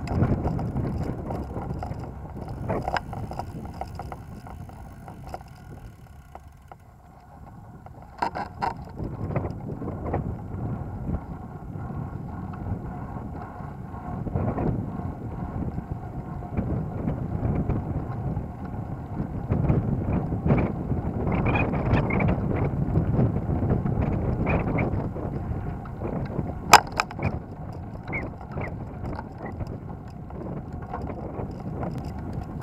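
Wind on the microphone and rolling road noise from a recumbent tricycle riding along paved streets, uneven and louder in the second half. There are scattered rattles and clicks, with a cluster about a third of the way in and one sharp click near the end.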